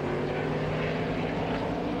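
NASCAR Cup stock cars' V8 engines running at racing speed on a road course, a steady engine drone.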